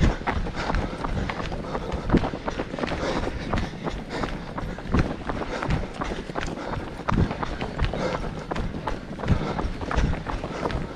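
Running footsteps on a tarmac road, heard from a camera carried by the runner, with uneven thuds and a low rumble from the movement.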